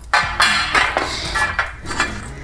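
Irregular metal clinks and scrapes as a hand conduit bender is set onto aluminum EMT conduit and positioned at the mark, over background music.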